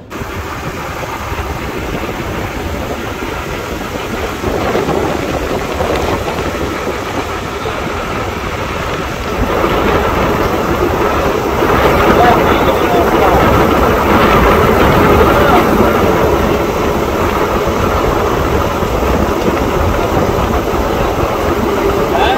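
Fishing-boat engine running under wind rumbling on the microphone and the wash of the sea, growing louder about ten seconds in as the two boats close.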